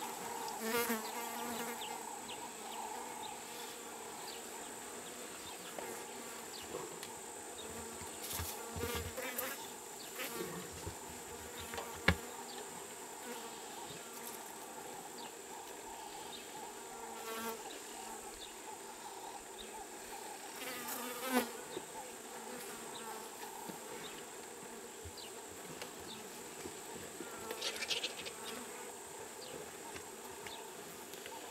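Flies buzzing around a fresh buffalo carcass over a steady high-pitched insect drone, with a few short louder sounds, among them a sharp click about twelve seconds in.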